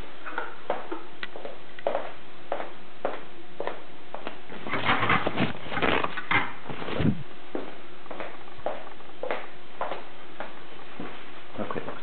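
Handling noise from an electric bass guitar being moved and turned over: scattered light knocks and rubs, with a denser flurry of bumps and rubbing about five to seven seconds in.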